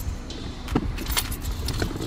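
Car keys jangling on a key ring held in the hand, with a run of quick clicks and light knocks as a framed picture is handled in an SUV's cargo area, over a low rumble.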